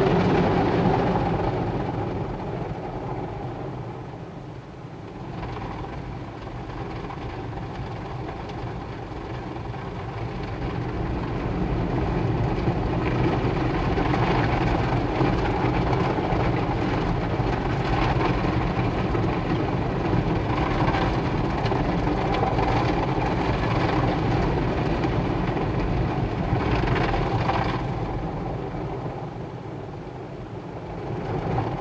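Automatic car wash running, heard from inside the car's cabin: a steady rumble and rush of machinery and water. It dips about four seconds in and builds back up from about ten seconds.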